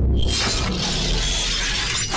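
Sound effect from a TV news title sting: a sudden loud shattering crash with a deep bass hit, layered with music and ringing on as the title graphic assembles.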